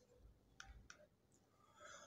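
Near silence with two faint clicks, a little over half a second and about a second in.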